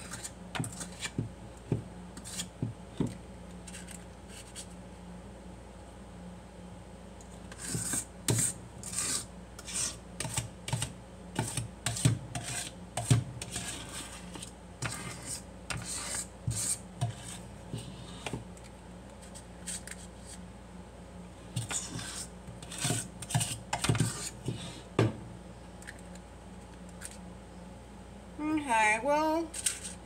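Metal disher scraping cake batter off the sides of a stainless steel mixing bowl, in runs of short scrapes with pauses between.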